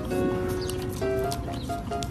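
Background music with held notes, and over it the wet licking and lapping of a golden retriever puppy working at a frozen fruit ice pop.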